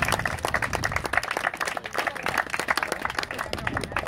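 A group of people applauding, a dense run of irregular hand claps.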